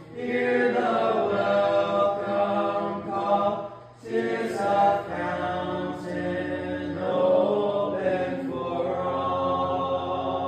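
A congregation singing a hymn unaccompanied, in long held phrases with a short breath break about four seconds in.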